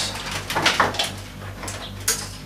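A few short knocks and light clatter as a wooden-cased home-made bench power supply is set down on a wooden workbench and its cables handled, over a steady low hum.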